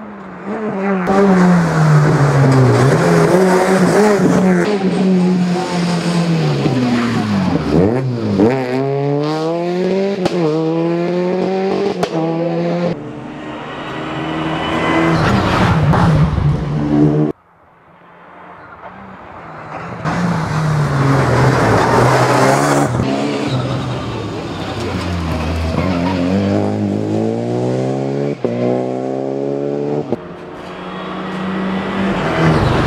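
Two rally cars in turn, driven hard on a special stage, their engines revving up through the gears and dropping back for downshifts. The first car's sound cuts off suddenly a little past halfway, and a second car's engine builds up and revs through the gears in the same way.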